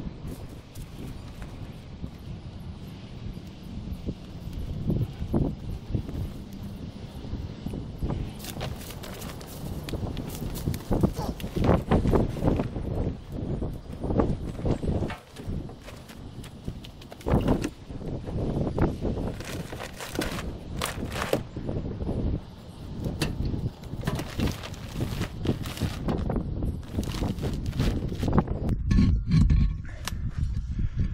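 Plastic tarp boat cover rustling and crinkling as it is pulled off, with irregular knocks and thumps, getting busier from about eight seconds in.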